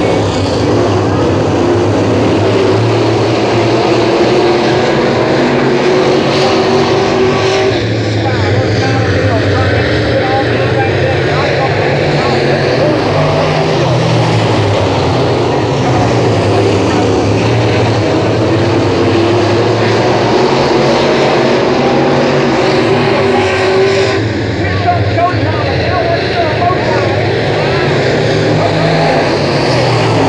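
A pack of dirt late model race cars with 602 crate V8 engines running at racing speed around a clay oval, a loud steady blend of many engines. The sound dips briefly about eight seconds in and again near twenty-four seconds as the pack moves away.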